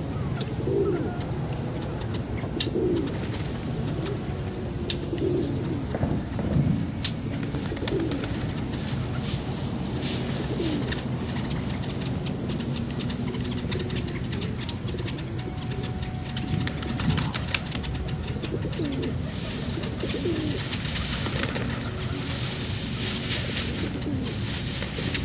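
A flock of feral pigeons cooing at a feeding, low throaty coos repeating every second or two over a steady low rumble, with scattered light clicks.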